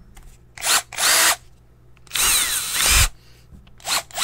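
Cordless drill triggered in the air with no workpiece, in short whirs. There are two brief ones in the first second and a half, a longer one from about two to three seconds in which the motor pitch rises and falls, and two quick blips near the end.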